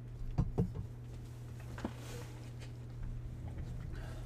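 Tabletop handling noise of trading-card packs and boxes: a few light knocks and clicks, with a brief rustle about two seconds in, over a steady low hum.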